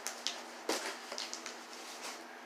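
Small cardboard box being handled and its packing tape picked at and peeled by hand: a few irregular light knocks, scrapes and crackles, the sharpest about two-thirds of a second in.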